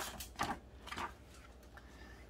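A picture book's paper page being turned on a bookstand: a few short rustles and taps in about the first second.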